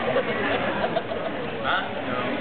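Congregation chatter: many people talking at once in overlapping conversations as they greet one another, a steady hubbub with no single voice standing out.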